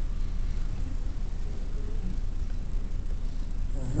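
Steady low rumble of a large hall's background noise, with no distinct event.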